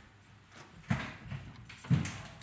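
Footsteps on a hard floor: slow, heavy steps, two louder ones about a second apart.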